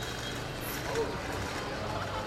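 Steady low hum of a boat's motor under a noisy background, with scattered voices; a short voice sound about a second in.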